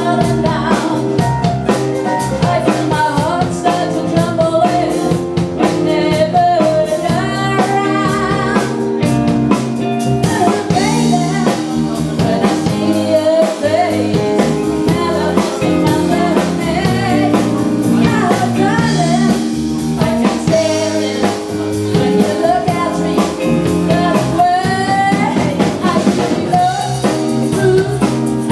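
Live rock band music: electric guitar, drum kit and keyboard playing a steady groove while a woman sings lead.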